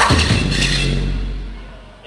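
Live rock band stopping on a sudden hit, after which a low bass note rings on and fades away over about a second and a half.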